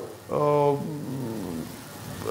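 A man's voice holding one steady hesitation sound for about half a second, then trailing off quieter and lower.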